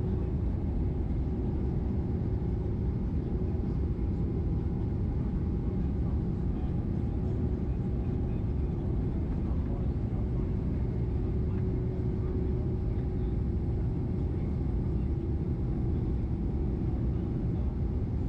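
Cabin noise of a Boeing 767 taxiing: a steady low rumble from the jet engines at taxi power and the rolling undercarriage, with a steady hum running through it.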